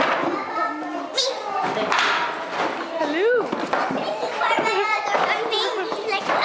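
A group of young children talking and calling out over one another, their chatter overlapping so that no single voice stands out, with one voice sliding up and back down in pitch about three seconds in.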